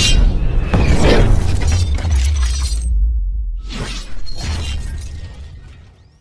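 Logo-animation sound effects: crashing, shattering hits and swishes over a deep bass rumble, with a short lull about three seconds in, then more hits fading away at the end.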